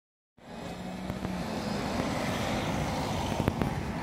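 Outdoor traffic: a motor vehicle passing, heard as a broad rushing sound that builds to its loudest about halfway through, with a few light clicks.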